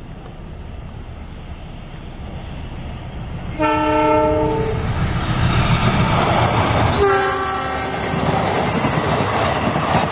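A GE diesel-electric locomotive hauling a passenger train. Its engine rumble grows as it approaches, and its multi-tone air horn sounds a chord twice: once about three and a half seconds in for about a second, and again about seven seconds in. The horn blasts are the driver's warning signal (semboyan 35). Loud wheel-on-rail noise follows as the carriages pass at speed.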